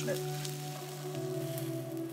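Food sizzling and frying in a hot pan during a flambé, a steady high hiss, under background music.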